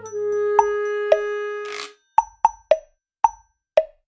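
Background music: a held electronic note with two short plucked notes over it, then five short, separate "plop" notes, each dropping in pitch, with silence between them.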